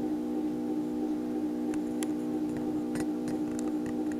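Upright open MRI scanner running a sequence: a steady hum of several fixed tones, with a few faint ticks in the second half.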